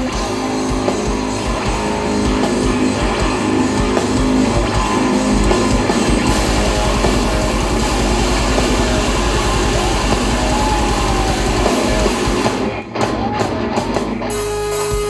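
Live hard rock band playing loudly: distorted electric guitars, bass and drum kit, with a few short stop-time breaks near the end.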